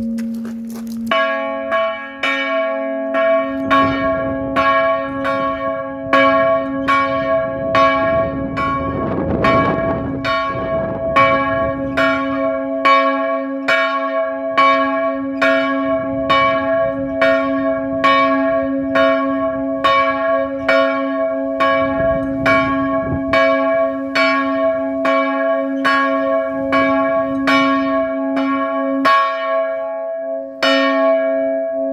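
The smaller of two 1952 Van Bergen (Heiligerlee) church bells in a wooden bell frame, strike note D-flat, swing-rung on its own. Its clapper strikes evenly, about three times every two seconds, starting about a second in. At the start, the deeper hum of the larger B-flat bell is still dying away.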